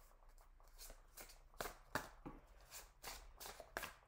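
A deck of tarot cards being shuffled and handled in the hands: a string of faint, irregular card snaps and flicks.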